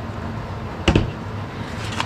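A framed picture set down with a single sharp knock about a second in, over a steady low hum. Faint rustling of packing paper near the end.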